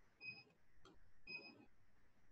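Faint electronic beeps from an LED gym interval timer as it is being programmed: two short, high beeps about a second apart, with a faint click between them.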